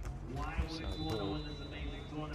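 Voices talking, with a steady high referee's whistle held for about a second in the middle, and a short thud of a volleyball being struck.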